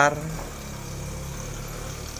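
Steady low machine hum.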